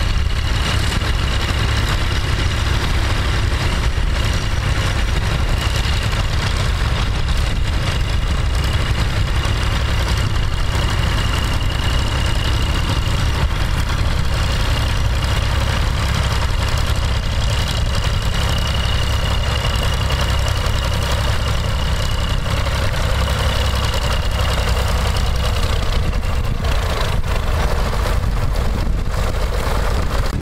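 Bolinder-Munktell BM 350 tractor engine running steadily while ploughing a field, with a thin steady high whine above the engine.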